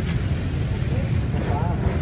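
Steady low rumble of outdoor street background noise, with a brief faint voice near the end.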